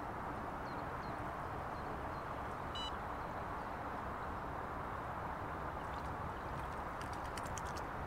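Steady lakeside background noise, with a single short bird chirp about three seconds in and a quick run of faint clicks near the end while a landed tench is handled back into the water.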